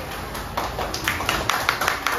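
Hand clapping, a few scattered claps at first that build into denser applause about halfway through.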